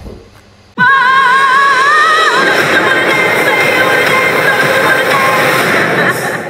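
Film-trailer music cutting in suddenly about a second in: a long, high sung note with vibrato, held over a dense swelling backing that fills the rest.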